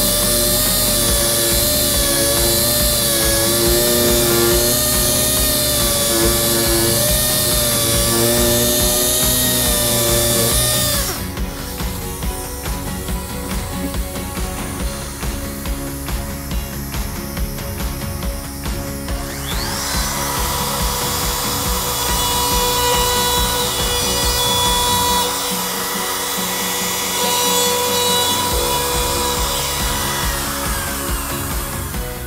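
Random orbital sander running on the wooden corner for about the first eleven seconds, its whine wavering slightly. About twenty seconds in a handheld router spins up and runs steadily as it cuts an edge profile on the board; background music plays throughout.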